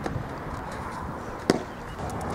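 A single sharp crack of a bat striking a softball, about one and a half seconds in, over steady outdoor background noise.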